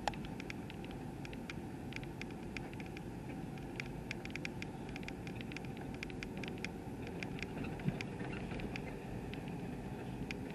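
Inside the cabin of a vehicle driving slowly: a steady low engine and road hum, with scattered light ticks throughout.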